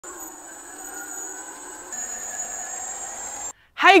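Steady electric whine of a tracked aircraft tug gripping the nose wheel, with a high thin tone over a lower hum; it steps up a little about halfway and cuts off abruptly, and a man says "Hey" just at the end.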